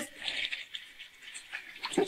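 Tap water running and splashing over jalapeño peppers as they are rinsed by hand, a soft even hiss.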